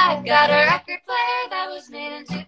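Two women singing a verse of a song with an acoustic guitar; the phrases break off briefly about a second in.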